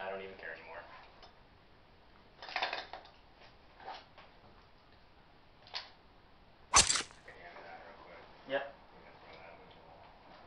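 A few faint, indistinct voices and small knocks, with one sharp, loud crack about seven seconds in.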